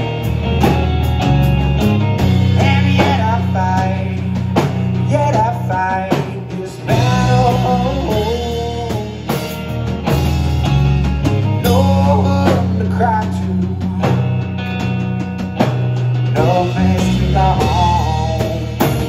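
Live rock band playing: electric guitar and electric bass over a drum kit, with a melody line bending in pitch throughout.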